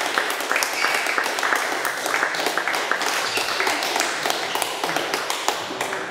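Scattered applause from a small group of spectators, hands clapping irregularly, with voices talking over it.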